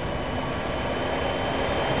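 Steady rushing noise with a few faint steady whines over a telephone line, in a gap between speech.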